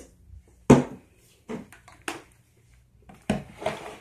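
A clear bowl of slime set down on a table with a sharp knock, followed by a few lighter knocks and a second firm knock near the end as items on the table are handled.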